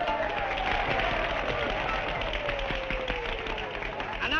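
A crowd applauding and chattering on an old film soundtrack, with one long note sliding slowly down in pitch through the applause.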